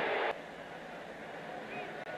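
Low, steady stadium crowd noise under a television football broadcast, left after the commentator's voice stops a moment in.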